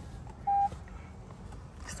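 Lexus RX 350h dashboard chime: a single short, steady beep about half a second in as the start button is pressed and the hybrid system powers up, with no engine starting.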